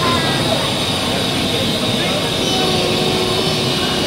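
Steady rushing hiss of steam escaping from a standing BR Standard Class 5 steam locomotive, unbroken throughout, with people's voices faint underneath.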